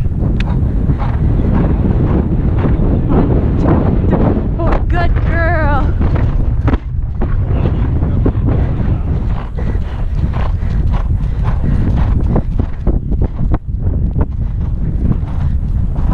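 Wind buffeting a helmet-mounted camera microphone as a horse gallops, with its hoofbeats on turf. A short wavering voice cuts in about five seconds in.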